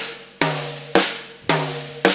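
A floor tom struck with drumsticks in slow, even single strokes, a little under two a second. Each stroke rings out with a steady low pitch that dies away before the next.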